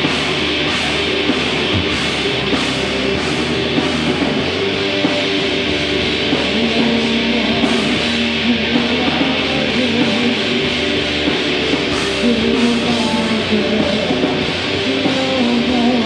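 A heavy metal band playing live, with distorted electric guitars over drums and a steady run of cymbal hits.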